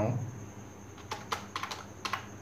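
Keystrokes on a computer keyboard: a few short clicks spaced irregularly through the second half, as a word is typed.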